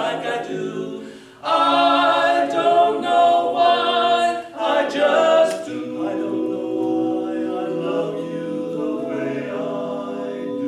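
Men's barbershop quartet singing a cappella in four-part harmony. After a short break a little over a second in, loud sustained chords ring out, then ease into a softer held chord in the second half.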